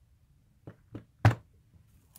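Three short knocks on a craft tabletop as small craft flowers are handled and set on a card, the third the loudest, about a second and a quarter in.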